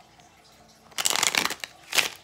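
A deck of tarot cards being shuffled: a quick fluttering burst about a second in, lasting about half a second, then a single sharp click near the end.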